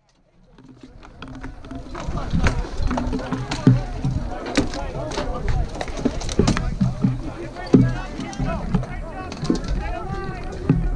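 Sound fades in from silence over the first two seconds. Then comes the din of a mock battle: many voices shouting with no clear words, and irregular sharp knocks and clacks throughout.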